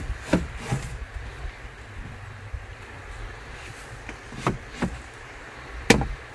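A few short wooden knocks and clunks from a plywood fold-out tabletop on folding metal legs being fitted and settled: two near the start, two more past the middle, and the sharpest one just at the end.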